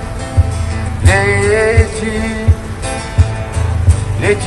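A pop-rock song with a voice holding a long, wavering sung note from about a second in, over guitar and a steady kick-drum beat of roughly three strikes every two seconds.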